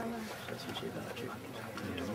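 Low, indistinct voices of people talking, with no shot fired.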